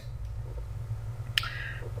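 Low steady hum with one sharp, short click about one and a half seconds in.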